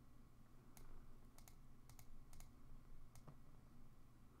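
Near silence broken by several faint, scattered clicks from the computer input device as a word is handwritten on screen stroke by stroke.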